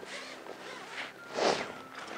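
Water splashing and running off a landing net as it is lifted out of the lake with a roach in it, with a short louder rush of noise about one and a half seconds in.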